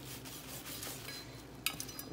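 Quiet handling sounds of a kitchen knife cutting and scraping meat off a goat's head, with a few small sharp clicks near the end.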